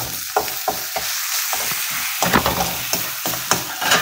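Metal spatula stirring and scraping eggs in a metal kadai on a gas stove: a steady frying sizzle under many quick, irregular clinks and scrapes of metal on metal.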